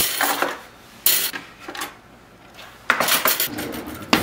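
Metal cutlery clattering and clinking as it is grabbed by the handful from a kitchen drawer's organizer tray and set on the counter. The clinks come in several bursts: one at the start, another about a second in, and a longer clatter from about three seconds in.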